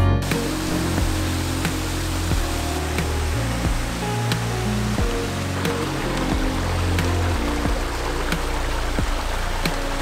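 Background music with a steady beat over the continuous rush of a small creek cascading over rocks.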